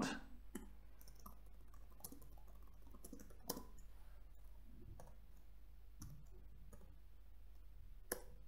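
Faint computer keyboard keystrokes, scattered irregular clicks about half a second to a second apart, over a low steady hum.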